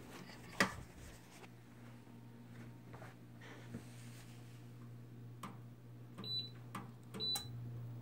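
Electric fireplace heater being switched on: a couple of faint clicks, then two short high beeps from its control panel about a second apart near the end, over a faint steady low hum.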